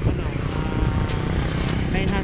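Engine of a motorcycle passing on the road, a steady drone, over a steady low rumble.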